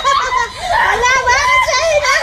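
Excited, high-pitched voices squealing and laughing.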